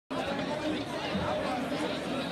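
Background chatter of several voices talking at once and overlapping, with no words standing out.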